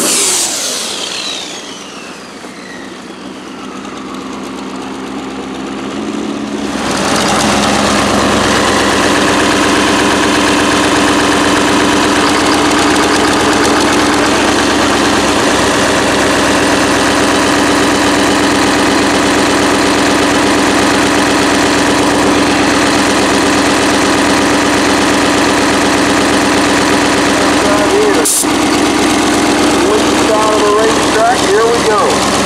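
A high whine falling steadily in pitch and fading over the first few seconds. About seven seconds in the sound changes suddenly to a rail dragster's turbocharged Duramax V8 diesel idling steadily up close with a constant hum. There is a brief click near the end.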